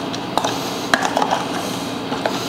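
A metal spoon stirring a wet mix of rolled oats, milk and raspberries in a plastic tub, giving a few soft squelches and clicks of the spoon against the tub.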